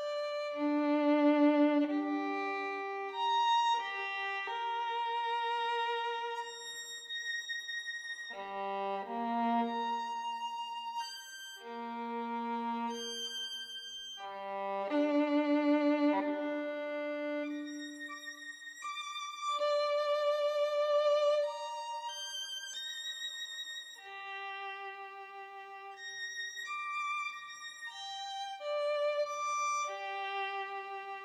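Solo violin playing a slow, calm melody of long held notes with vibrato, one note after another with no accompaniment beneath.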